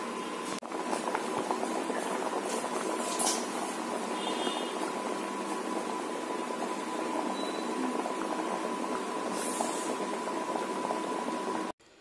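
Cassava pieces boiling hard in water in an aluminium pot: a steady, crackling bubbling that cuts off suddenly near the end.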